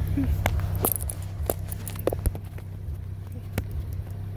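A Ford Ranger pickup's engine idling low and steady, heard inside the cab, with a handful of light clicks from keys being handled.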